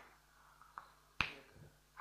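Whiteboard marker cap clicking in the hands: a faint click just under a second in, then a sharper, louder one a little over a second in, over quiet room tone.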